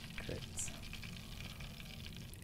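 Breaded pork cutlets deep-frying in oil in a cast iron pan: a soft, steady sizzle.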